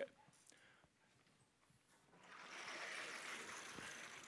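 Chalk writing on a blackboard: after a brief click and near silence, a soft, steady scratching hiss begins about halfway through.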